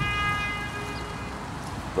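A horn sounding one steady held note that fades out after about a second and a half.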